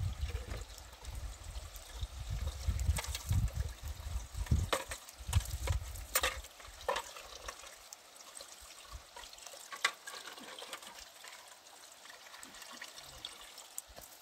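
Water running from the tap of a plastic water tank into a plastic bucket, with scattered knocks and clinks as the bucket and a spoon are handled. It is louder with low rumbling noise in the first six seconds, then quieter.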